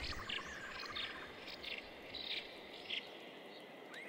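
Forest birdsong: a fast trill lasting about a second, then a few short, high chirps, with the trill starting again near the end.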